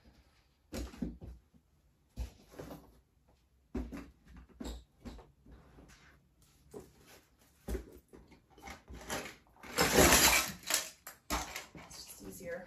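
Rummaging through a zippered fabric tool bag and handling toys on a carpeted floor: a string of small knocks and clicks, with a louder rustling burst about a second long near the end.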